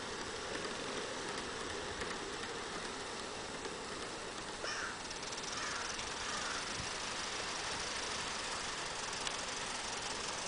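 Large-scale Aristo-Craft Mikado model locomotive and six coaches running down a grade on an outdoor garden track, heard faintly as a steady rolling noise.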